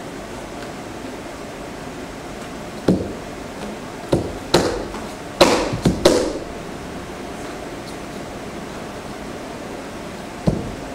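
Bharatanatyam dancer's feet stamping on a wooden floor during an Alarippu adavu: six sharp stamps, one about three seconds in and then a quick run of five, the loudest near the middle, each echoing briefly in a small bare room over a steady hiss.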